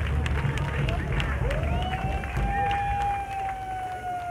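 Outdoor rally crowd noise through a public-address system with scattered claps. From about a second and a half in, a long steady whistling tone from microphone feedback swoops up, then sinks slowly in pitch.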